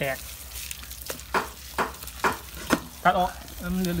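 Wet squelching as hands rub marinade into a whole raw chicken and work herbs into it in a basin, a handful of short squishes about half a second apart.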